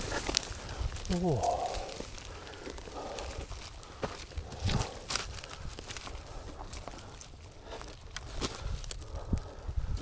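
Dry twigs and branches cracking and snapping with rustling leaf litter as a person scrambles on foot and by hand across a steep forest slope, a string of irregular sharp cracks. A startled 'whoa' about a second in.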